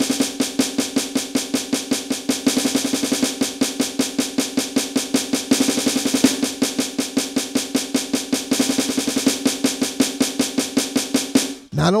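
Electronic drum kit's snare sound, a pad struck with sticks in a fast continuous run of even 16th- and 32nd-note strokes, singles and doubles, kept free of accents. It stops just before the end.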